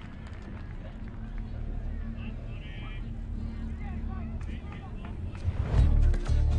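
Scattered shouts and calls of football players over a steady low rumble of pitch ambience, with a louder low swell near the end.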